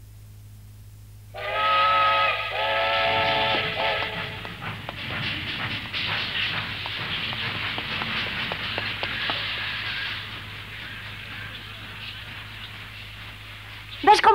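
A ship's steam whistle sounds two blasts, each about a second long: the signal of the ship arriving in port. A long rushing hiss with scattered clicks follows and fades after about ten seconds.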